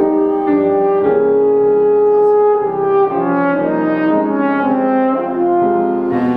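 French horn playing a slow phrase of sustained notes, with one long held note from about one second in to two and a half seconds, then several shorter notes moving up and down.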